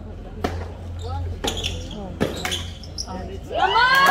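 Tennis ball struck by rackets in a doubles rally: a serve about half a second in, then a few quick return and volley shots. Near the end, spectators shout and cheer as the point is won.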